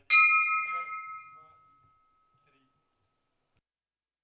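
A single stroke of a hippodrome's finish bell, marking the leader crossing the line in a harness race. It rings clearly and fades away over about three seconds.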